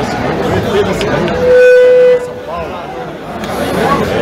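A few sharp clicks of pool balls about a second in. Then a single steady horn-like tone is held for under a second and cuts off suddenly; it is the loudest sound, over crowd chatter.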